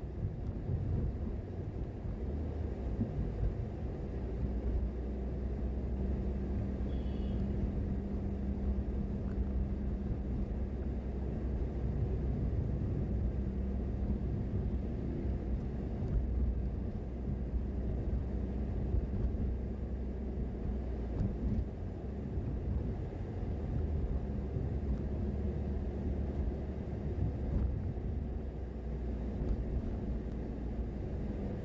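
A car driving along a city street, its engine and tyres making a steady low rumble with an engine hum.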